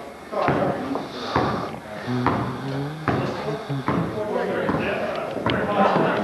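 Indistinct talk of players and onlookers echoing in a gymnasium, with a basketball's sharp thuds on the floor every second or so.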